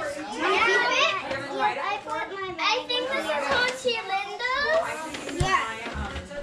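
Several young children talking and exclaiming over one another in high, overlapping voices, with a short knock about five and a half seconds in.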